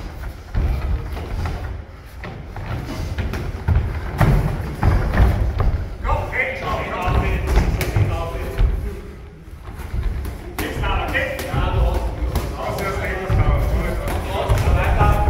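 Repeated dull thuds of gloved punches and kicks landing and feet stamping on the padded cage floor during an MMA exchange, with voices shouting over it in the second half.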